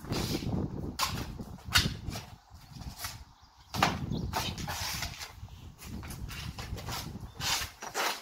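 Feet in sneakers stepping, stamping and scuffing on a concrete patio during a kung fu footwork drill: an irregular run of sharp slaps, with a quieter gap about two and a half seconds in, over a low rumble.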